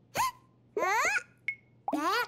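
Cartoon chick characters' voices: three short, high-pitched exclamations, each rising in pitch, the middle one longer like an excited squeal. A tiny click with a short ping comes between the last two.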